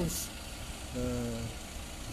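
A man's held hesitation sound, a drawn-out 'eee' at one steady pitch about a second in, after a short breath, over a continuous low hum.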